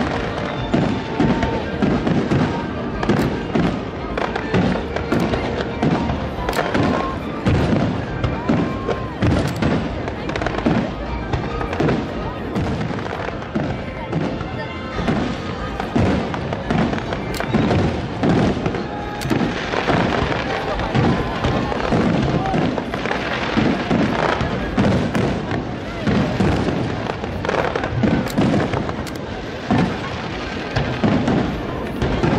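Fireworks display: aerial shells bursting in quick succession, many reports a second overlapping into a continuous crackling barrage.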